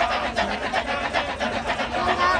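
Kecak chorus of many men chanting the rapid, interlocking 'cak-cak-cak' rhythm in a fast, even pulse, with a sung vocal line over it.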